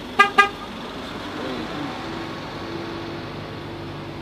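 Car horn, a 2019 Ford Mustang's, giving two short chirps in quick succession right at the start, followed by a faint steady hum.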